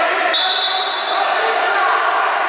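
Indoor sports hall during a youth football match: a mix of voices from players and spectators. A thin, high, steady tone starts about a third of a second in and lasts just under a second.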